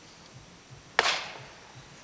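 A single sharp crack about a second in, dying away over about half a second.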